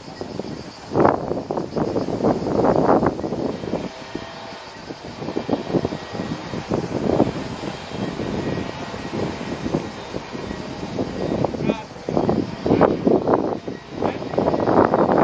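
Indistinct voices of people talking in conversation, with a little wind on the microphone.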